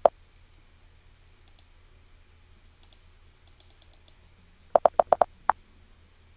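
Computer keyboard typing: a quick run of about six keystrokes near the end as a short word is typed, after a single sharp click at the start and a few faint ticks in between.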